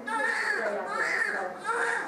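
Newborn baby crying on a weighing scale, three wailing cries one after another, each rising and falling in pitch.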